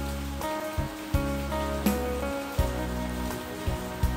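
Background music with held low notes and a higher melody, over a steady hiss of falling rain.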